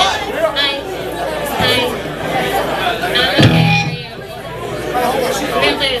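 Overlapping voices and crowd chatter in a bar between songs, with a brief low amplified instrument note sounding about three and a half seconds in.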